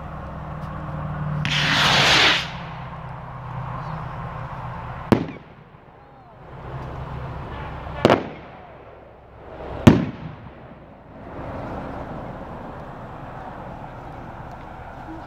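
Homemade fireworks rockets: a rushing hiss swells and cuts off about two seconds in, then three sharp bangs come at about five, eight and ten seconds in, each trailing a short echo as the rocket heads burst.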